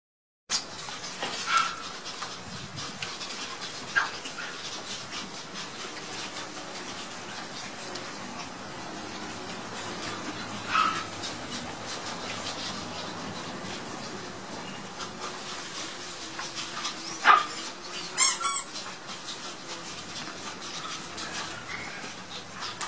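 A litter of puppies at play: a handful of short, high yips over a steady background of noise, with the loudest three yips close together near the end.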